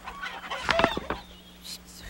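Chicken clucking and squawking: a few short, sharp calls about half a second to a second in, then fading.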